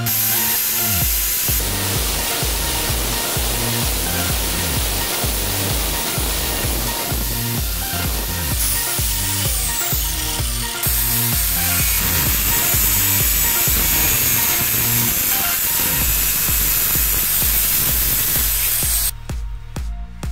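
Angle grinder running against a steel bicycle handlebar tube: a loud, steady grinding noise that cuts off suddenly about a second before the end, with electronic dance music underneath.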